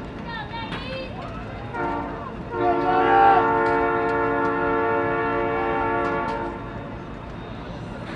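A horn sounding a loud, steady chord of several tones for about four seconds, starting about two and a half seconds in, after a shorter, quieter tone; the chord dies away near the end.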